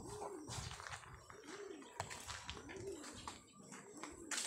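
A dove cooing: three short arched coos a little over a second apart, quiet against the outdoor background.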